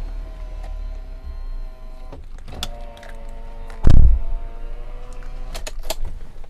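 A car door is opened and then shut with a loud thud about four seconds in, with a few sharp clicks from the door and latch, over a steady hum.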